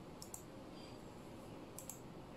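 Computer mouse clicks: two quick click pairs, a press and release each, one about a quarter second in and one near the end, over faint room hiss.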